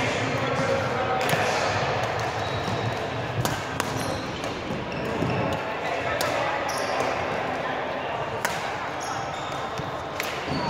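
Badminton rackets striking a shuttlecock in a rally, several sharp hits a second or more apart, over steady background chatter of voices.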